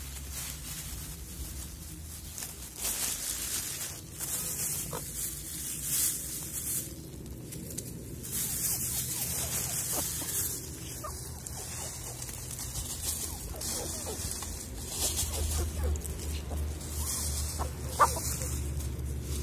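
Hens pecking at scattered bread on dry leaf litter: repeated rustling and crackling of the leaves, with short sharp pecks scattered through. A low wind rumble is on the microphone throughout.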